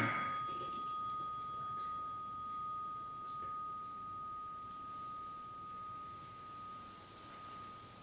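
A meditation bell ringing on after being struck, one steady pure tone slowly fading as it marks the end of a zazen sitting. A sigh comes right at the start.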